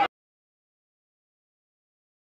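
Dead silence: the sound track cuts out completely just after the start, following the last trailing syllable of a man's speech.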